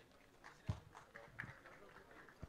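Faint murmur of voices with a few soft knocks, the loudest a little under a second in.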